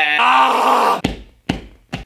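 A man's loud, drawn-out breathy groan that cuts off suddenly about a second in, followed by two short thumps about half a second apart.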